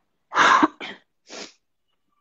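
A woman sneezing into her cupped hands: one loud burst about half a second in, followed by two shorter, quieter bursts.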